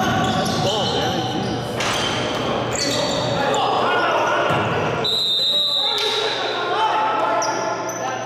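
Basketball game in a gym: a ball bouncing on the hardwood court and players calling out, echoing in the hall.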